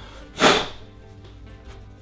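A single short whoosh about half a second in, over faint background music.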